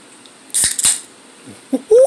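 Two short fizzy hisses with clicks from an opened Sprite releasing its carbonation, about half a second in.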